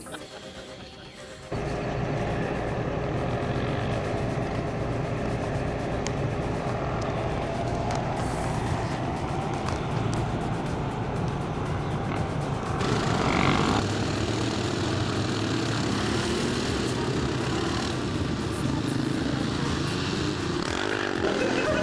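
Several quad/ATV engines running, mixed with background music; the sound starts abruptly a second or two in and shifts character about two-thirds of the way through.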